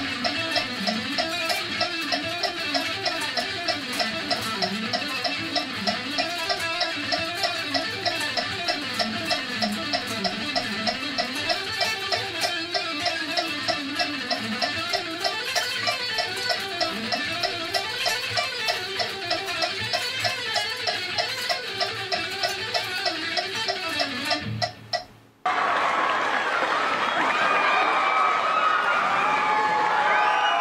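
Electric guitar playing fast runs of notes over a metronome clicking at 192 beats a minute. About 25 seconds in, guitar and clicks cut off abruptly and a cheering crowd takes over.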